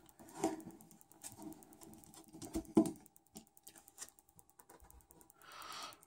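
Faint ticks and small clicks of a precision screwdriver turning a screw in a power bank's aluminium casing. There is a sharper click about half a second in and two more a little before the three-second mark.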